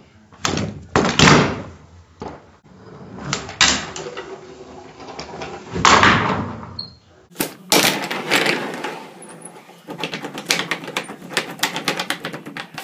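A handboard's deck and wheels clacking and landing on a wooden tabletop. There are several drawn-out thuds in the first half, then a rapid run of sharp clicks and knocks from about seven and a half seconds in.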